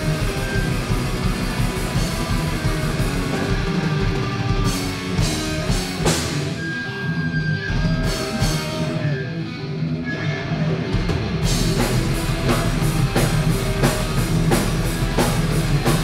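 Live heavy metal band playing: distorted electric guitars, bass guitar and drum kit. From about six seconds in the drums drop out for several seconds, leaving the guitars ringing, and the full band comes back in after about eleven seconds.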